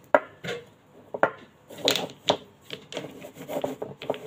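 Small plastic paint jars handled on a sheet of paper over a table: irregular light knocks and clicks as they are set down and bumped together, with scraping as they slide.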